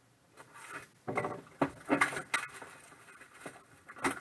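Trading-card packaging being handled by hand: a run of irregular crinkles, scrapes and taps as card holders and a cardboard box are moved on the table, loudest about two seconds in.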